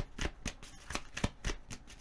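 A tarot deck being shuffled by hand: a quick, uneven run of soft card clicks, about five a second.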